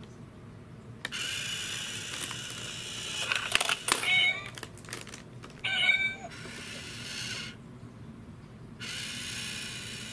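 Battery-powered Japanese cat coin bank: its small motor runs in three whirring spells as the lid lifts and the toy cat peeks out. Meows come twice in the middle.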